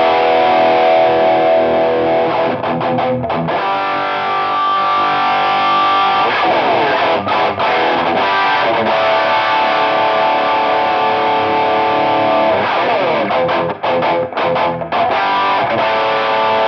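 Distorted Ibanez electric guitar played through a Marshall JMP-1 preamp, ADA power amp and Two Notes Torpedo cabinet simulation with no noise gate: long sustained notes with string bends, broken by quicker picked runs about three seconds in and again near the end.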